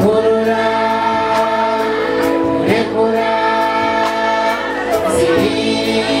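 Live band-and-choir music: a children's choir sings long held notes in harmony over bass guitar, keyboard, acoustic guitar and conga drums keeping a steady beat.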